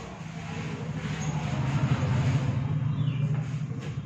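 A motor vehicle passing by: a low engine rumble that swells to its loudest about two seconds in and then eases off.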